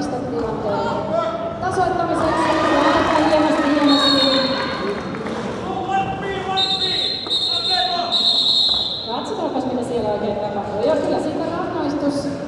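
Voices and shouting echoing in a sports hall during a roller derby bout, with several high, steady referee whistle blasts: a short one about four seconds in and longer ones from about six and a half to nine seconds.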